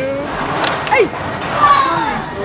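Excited, high-pitched human voices: exclamations and squeals with no clear words, including a sharply falling squeal about a second in and another falling cry near the end, over general chatter.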